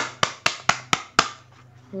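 Six sharp taps on a hard plastic toothbrush holder in quick succession, about four a second, stopping a little over a second in.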